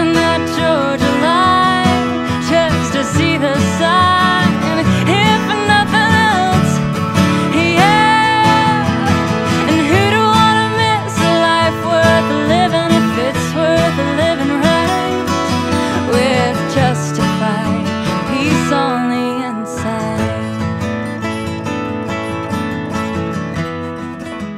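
Background music: a country song with acoustic guitar, thinning out in the last few seconds.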